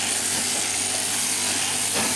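Sheep shearing handpiece running steadily as it cuts the dirty wool (dags) from around a sheep's tail during crutching, a continuous buzzing hiss over a constant low hum.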